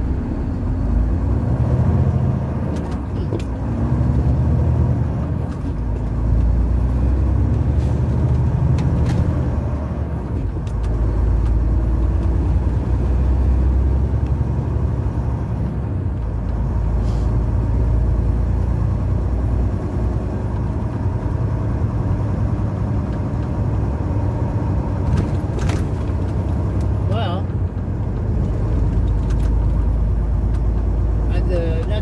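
Semi truck's diesel engine and road noise heard from inside the cab while driving, a low drone that swells and eases every few seconds, with a few faint clicks.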